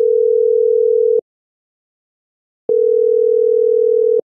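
Telephone ringback tone heard on the caller's end while the called phone rings: one steady tone sounding twice, each time for about a second and a half, with a silence of about the same length between.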